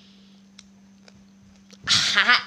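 A faint steady hum, then near the end a young man's loud, wavering yell as the raw green chili he is eating burns his mouth.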